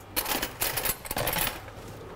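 A metal ladle scraping and clinking against the inside of a stainless steel pot, a quick run of sharp clicks and scrapes lasting about a second and a half.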